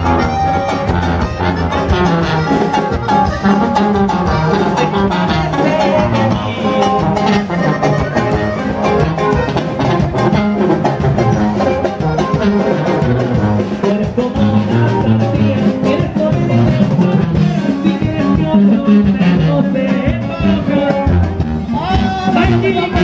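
Live band music played from a moving truck: a sousaphone carrying the bass line under a drum kit, with a steady, lively beat.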